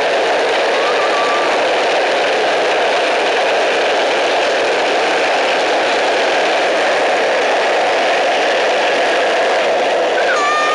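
Steel ball-bearing wheels of a carrinho de rolimã (ball-bearing cart) rattling and rumbling steadily on asphalt as it rolls at speed.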